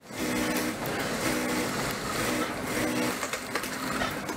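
Industrial sewing machines running in a garment workshop: a dense mechanical noise with a motor hum that starts and stops in short runs, about once a second.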